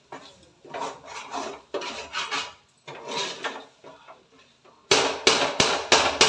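A metal ladle scraping and stirring in a large metal pot, a soft rasping scrape about once a second. Near the end come several louder, sharp clanks of metal on metal.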